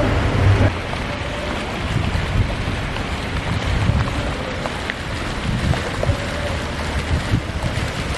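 Fountain water splashing steadily into a reflecting pool, with wind buffeting the microphone in uneven gusts.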